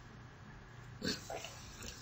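Two short, muffled noises from a man's throat and nose about a second in, stifled behind his hand.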